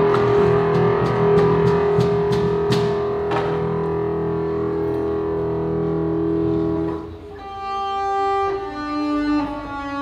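Instrumental music: a long held drone with sharp percussive strikes over it in the first few seconds. About seven seconds in it briefly drops away and gives way to different sustained notes.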